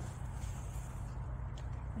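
Steady low background hum with a faint soft click as a Raoul succulent's flower stalk is twisted and pulled out by hand.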